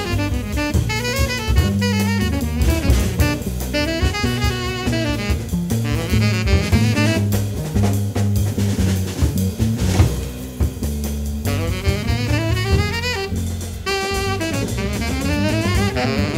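Live jazz: a tenor saxophone solos in fast runs over bass and a drum kit. The saxophone drops out for a few seconds around the middle while the bass and drums carry on, then comes back in.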